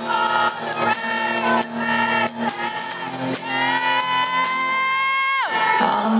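Live acoustic rock song: singing over a strummed acoustic guitar. A long high note is held through the second half and slides down just before the end.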